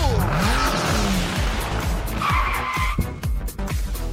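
Electronic intro music with a steady beat, overlaid with cartoon sound effects. Pitch glides sweep up and down in the first second, then a held high tone lasts about a second from two seconds in.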